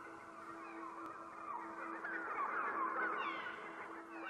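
A flock of birds calling, many short squeaky chirps overlapping into a chatter that swells about halfway through, over a low, steady musical drone.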